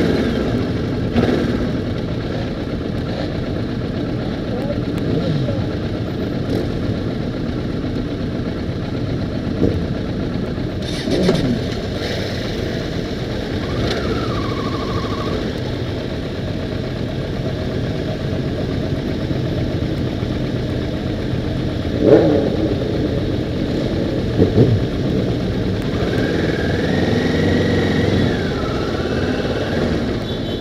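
Several motorcycle engines running together at low speed, a group of bikes riding slowly in traffic, with steady road noise and a few short revs, the loudest about two-thirds of the way through.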